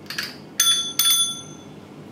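Small chrome handlebar bell on a child's tricycle rung twice, about half a second apart, each ring clear and fading out over most of a second. A brief handling rustle comes just before the first ring.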